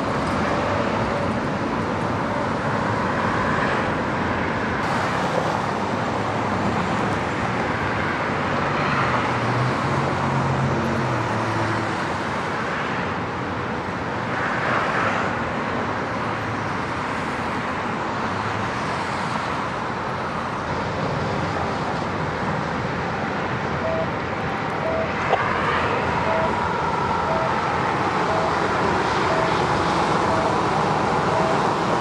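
Steady freeway traffic noise, with vehicles passing and swelling then fading every few seconds. Near the end a faint short beep repeats about one and a half times a second.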